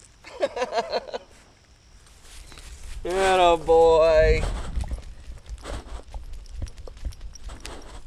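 A dog's paws running over grass and gravel, heard close up, with a run of quick light steps from about five seconds in. A short laugh comes near the start, and a loud drawn-out voice call about three seconds in, over a low rumble of handling.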